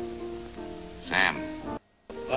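Old film soundtrack playing back: held music notes with a short burst of a voice about a second in. Near the end the sound cuts out for a moment as playback jumps from one trimmed segment to the next.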